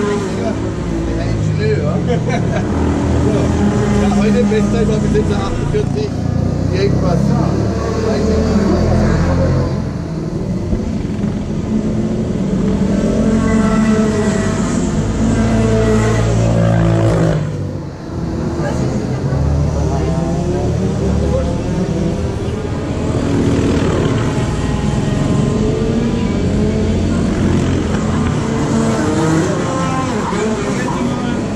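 Indistinct voices talking, with a steady low rumble underneath and a brief pause in the talk near the middle.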